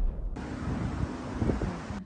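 Rumbling, rushing sound effect of the intro's fiery explosion trailing off, with a fresh rush of noise about a third of a second in. It cuts off suddenly at the end.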